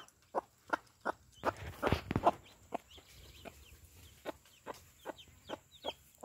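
Mother hen pecking corn off bare dirt in a string of quick sharp taps, with her clucks and the faint high peeping of newly hatched chicks.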